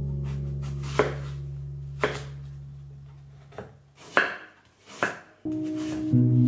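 Chef's knife chopping an apple on a wooden cutting board: five sharp chops roughly a second apart. They sit over a held music chord that fades out, and new music comes in near the end.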